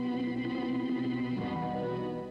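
Opening theme music of a TV soap opera: sustained, effects-laden guitar chords, changing to a new chord about one and a half seconds in.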